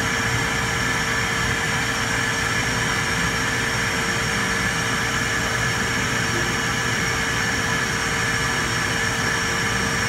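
Automated key-duplicating kiosk running with a steady whirring hum, a few fixed tones held throughout, as it cuts a copy of a key.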